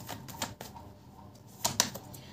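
A deck of tarot cards being shuffled by hand: a few sharp card clicks and snaps, the loudest pair about one and a half seconds in.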